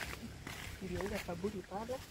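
A woman crying softly: a run of short, wavering sobs begins about a second in.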